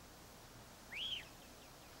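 A single short bird call about a second in: one clear whistled note that rises and then falls in pitch, over a faint steady background hiss.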